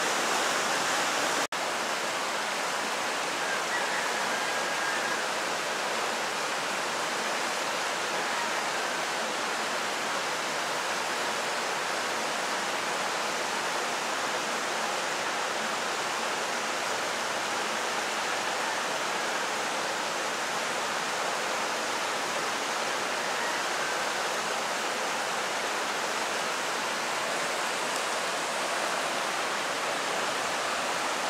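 Horcones River rushing over boulders and small cascades: a steady, even rush of water. The sound cuts out for an instant about a second and a half in.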